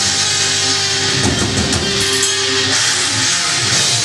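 Heavy metal band playing live: distorted electric guitars, bass and drum kit, with one note held for about a second near the middle.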